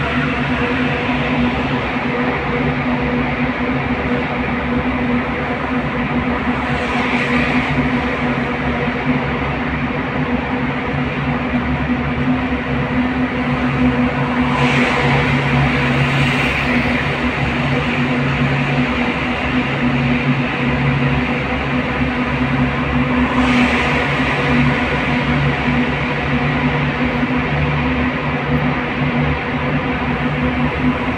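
Cabin noise of a car driving through a road tunnel: a steady engine and tyre drone with a constant low hum. It swells into a brief hiss three times, about a quarter, halfway and three-quarters through, as other vehicles pass.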